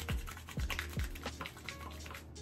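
Wet hands rubbing a clear gel facial cleanser into a lather: quick wet rubbing and squishing strokes, over background music.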